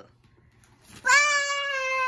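A young child's voice giving one high-pitched, drawn-out squeal or "oooh" held at a steady pitch for about a second, starting about a second in.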